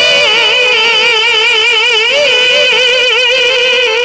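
A woman chanting Qur'anic recitation (tilawah) into a handheld microphone, holding long melodic notes with a wavering, ornamented pitch.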